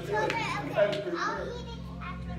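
Indistinct overlapping chatter of several people, children's voices among them, in a room.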